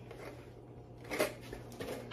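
Faint handling sounds at a kitchen counter: a few light knocks and rustles from about a second in as a lid box is set aside and the next utensil is reached for.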